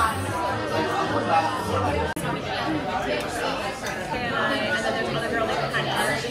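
Restaurant dining-room chatter: many diners talking at once in overlapping, indistinct voices, with a brief dropout a little after two seconds.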